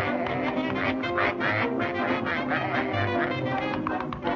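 Orchestral cartoon score, with a quick run of quacking sounds over the music.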